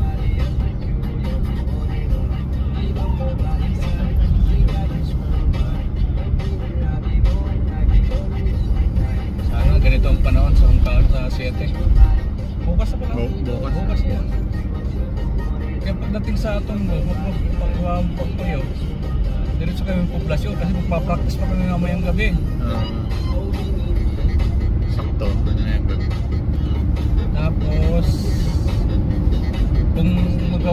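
Steady low engine and tyre rumble inside a car cruising on an expressway, with music with singing playing over it.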